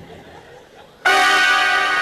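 A loud, bright bell-like ringing tone starts suddenly about a second in, holds steady for about a second and cuts off abruptly.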